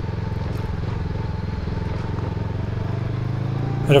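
Motorcycle engine running steadily at low trail speed, its pitch rising slightly near the end.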